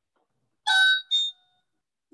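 Two-note electronic chime: a ringing note about two-thirds of a second in, then a shorter second note, each fading out quickly.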